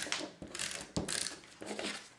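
SNAIL adhesive tape runner rolled in short strokes across the back of cardstock, giving several quick rasping, ratchet-like strokes with clicks.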